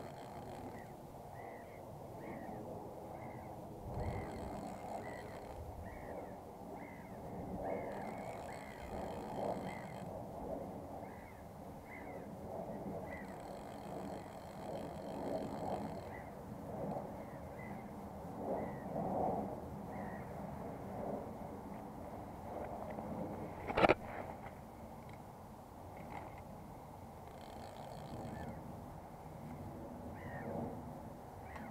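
Birds calling again and again, in short repeated calls with bursts of higher calls, over a steady low rush of river water and wind. One sharp click, the loudest sound, comes a little past two-thirds of the way through.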